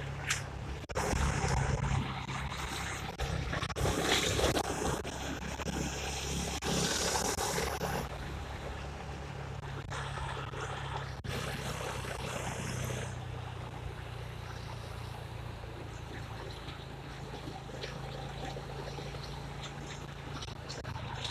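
Motorcycle engine running steadily while riding, under wind and road noise on the microphone. The noise swells louder in several stretches during the first eight seconds, then settles.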